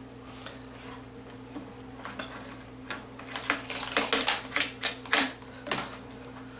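Quick irregular clicks and ticks of a thin pickup wire and fingertips against the generator's plastic housing as the wire is looped around the ignition coil lead, bunched in the second half over a faint steady hum.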